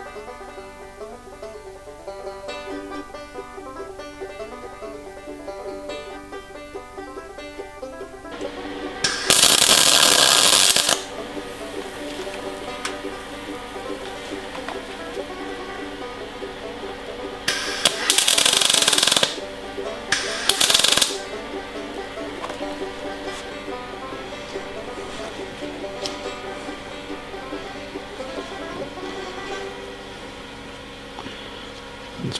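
Banjo background music throughout, broken three times by loud crackling bursts of electric welding, about two seconds, a second and a half, and half a second long. The welding fixes a sheared security nut onto a seized injection-pump screw so that the screw can be turned out.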